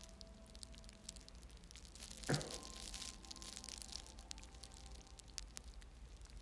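Quiet room tone with faint scattered ticks and crackles, broken by a short murmured phrase about two seconds in.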